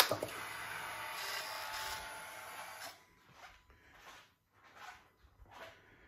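A click as the Ducati Streetfighter V4S's ignition is switched on, then its fuel pump whirring steadily for about three seconds as it primes, stopping abruptly, followed by faint small handling sounds.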